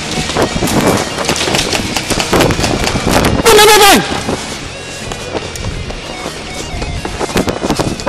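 Airsoft guns firing in quick, irregular shots, with a player shouting loudly about three and a half seconds in.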